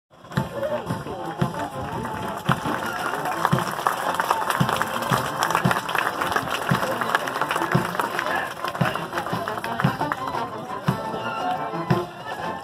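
Marine Corps band playing a march on the parade deck, a bass drum beat landing about once a second, with spectators talking in the stands.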